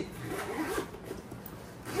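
Zipper on the front pocket of a Pelagic Waypoint backpack being pulled, a short rasp in the first second.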